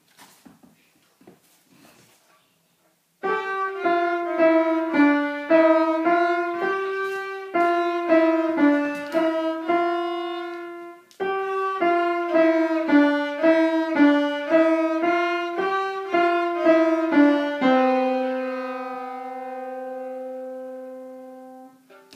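Violin and piano playing a cheerful little tune together after a few seconds of faint shuffling. It comes in two phrases with a short break in the middle and ends on a long held note that fades away.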